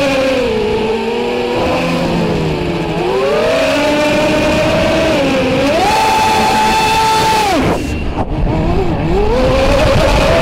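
Brushless motors and propellers of a small FPV racing quadcopter whining, heard through its onboard camera, the pitch rising and falling with throttle. About three-quarters of the way through, the whine drops away sharply as the throttle is cut, then climbs again as the motors spin back up.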